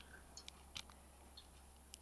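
Near silence with a few faint small clicks from handling a Nike+ FuelBand's silver clasp piece as it is fitted back onto the band.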